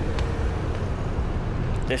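Steady low outdoor rumble with no clear pattern, and a man's voice beginning right at the end.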